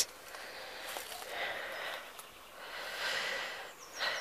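Two soft breaths close to the microphone, a faint hiss that swells and fades twice.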